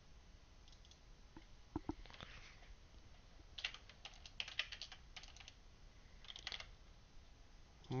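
Faint typing on a computer keyboard: short runs of keystrokes with pauses between them.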